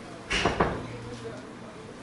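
A brief clatter, a few knocks close together, about half a second in.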